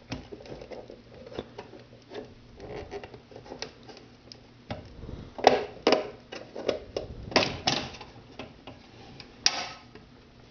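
Clicks and knocks of the housing of a Western Electric 554 rotary wall phone being worked loose and lifted off its base. The knocks are sparse at first, then louder and closer together from about halfway through, with one more sharp knock near the end.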